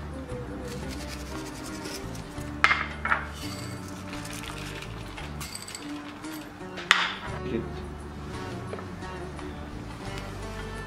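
Background music, with sharp clinks of small glass spice bowls being handled: two about two and a half and three seconds in, and a louder one about seven seconds in.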